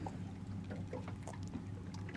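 Steady low hum of a fishing boat idling, with a few faint small clicks.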